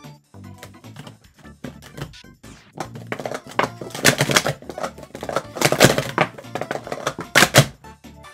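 Plastic sport-stacking cups clacking in rapid runs as they are stacked up and down at speed in a cycle. The clatter is loudest from about three seconds in until just before the end, over background music.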